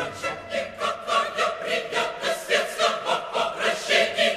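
Opera chorus singing a rapid, evenly pulsed patter of syllables, about three or four a second, with crisp consonants, over held instrumental tones.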